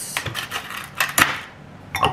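Ice cubes being cracked out of a plastic ice cube tray and dropped into a glass: several sharp clatters and clinks at irregular intervals.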